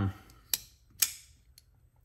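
Knafs Lander folding knife clicking sharply twice, about half a second apart, as its blade is worked open and shut in the hand.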